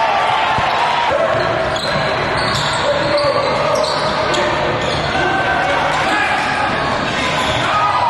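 Sounds of a basketball game in a gym: a basketball bouncing on the hardwood court and sneakers squeaking, with players' and spectators' voices throughout.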